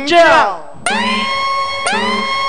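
A game-show sound effect: a siren-like electronic tone that sweeps up and then holds, starting over about once a second. It follows the end of a shouted phrase.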